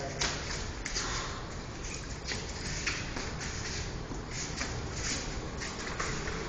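Faint scattered thuds and shuffling from two people sparring in boxing gloves on a mat, over steady room noise.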